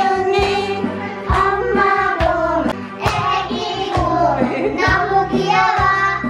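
Karaoke backing music with a beat, and a young child singing along into a karaoke microphone.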